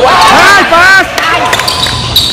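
Voices shouting on an indoor basketball court, two rising-and-falling calls in the first second, over court noise with a basketball bouncing on the hardwood floor.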